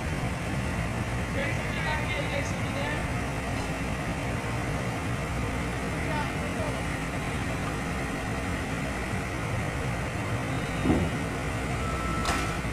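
Hydraulic excavator's diesel engine running steadily, with people talking in the background and a brief louder sound near the end.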